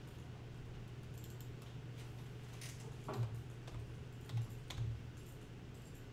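A few scattered keystrokes on a computer keyboard, entering values into the software, over a steady low hum in the room.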